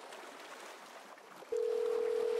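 Faint surf ambience, then about one and a half seconds in a single steady telephone calling tone begins: the ringback beep of a phone call being placed.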